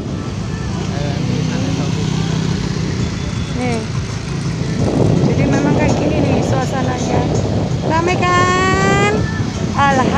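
Motorcycle engine running steadily as the bike rides along, with road and wind noise. Voices of people nearby pass by, with one held, pitched call for about a second near the end.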